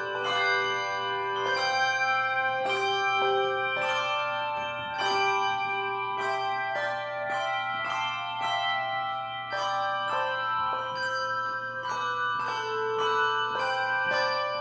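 Handbell choir playing a slow piece: chords of several bells struck about once a second and left ringing.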